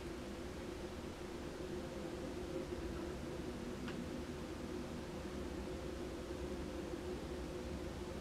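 Steady background hum of the room, with a few faint held tones over a low rumble, and one faint tick about four seconds in.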